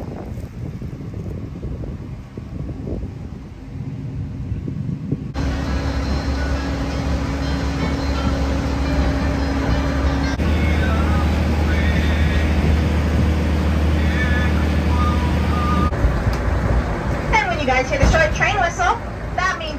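Narrow-gauge train's locomotive engine running at a steady low hum, starting suddenly about five seconds in after a quieter rumble, with people talking near the end.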